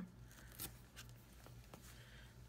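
Washi tape being torn against the edge of a plastic gift card: a few faint, short ticks over a low steady hum.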